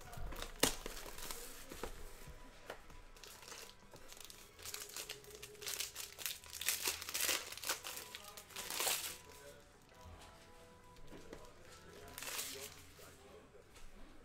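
Plastic wrapping being torn off a sealed box of trading cards and crumpled: a run of crackling and crinkling, busiest in the middle few seconds with another burst near the end.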